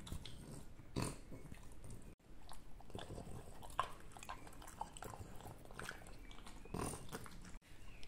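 French bulldog licking and chewing a small treat held in a hand: a run of short wet smacks and licks, with two louder bursts, one about a second in and one near the end.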